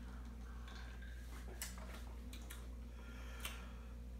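Quiet drinking sounds over a low steady room hum: a few faint clicks and ticks from sipping from a glass of ice cubes and an aluminium can.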